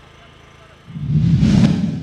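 A whoosh transition sound effect that swells up about a second in and fades away, over a faint steady background.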